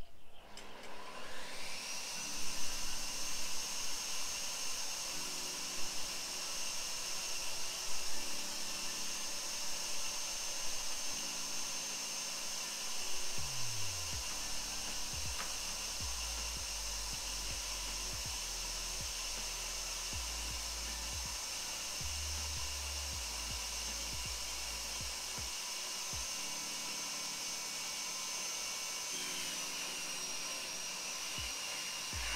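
A stand-mounted woodworking power tool's electric motor spins up about a second in and then runs at a steady high-pitched whine while a long timber fascia board is fed through it.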